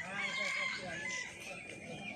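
A rooster crowing once, one long call lasting over a second.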